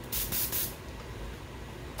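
Harbor Freight quick-change airbrush giving three short bursts of hissing spray in quick succession, misting latex mask paint from its siphon bottle on unregulated compressor air at about 70 psi.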